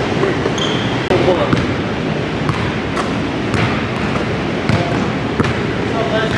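Basketball bouncing on a hardwood gym floor and off the rim during shooting practice, with irregular thuds in a reverberant hall.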